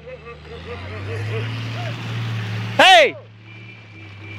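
An off-road 4x4's engine runs with a steady low rumble that swells a little, under faint distant voices. About three seconds in, one person gives a loud, short shout.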